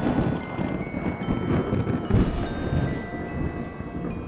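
Music of bell-like mallet notes ringing out one after another over a long rumble of thunder.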